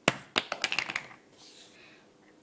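A quick run of small, sharp clicks and taps over about a second, the first the loudest, as a beading needle picks up seed beads from the work surface.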